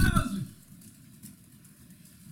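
A man speaking Hebrew ends a phrase in the first half-second, then pauses, leaving only quiet room tone.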